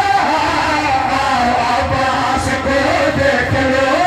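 A man singing a devotional qasida through a loud public-address system, in long held notes that bend in pitch, over a low rumble of background noise.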